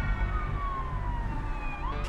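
Police siren sound effect in a title jingle: one long falling wail that starts to rise again near the end, over a low pulsing music beat.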